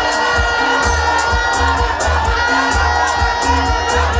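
Loud music with a steady beat and heavy bass, over a large crowd cheering and shouting.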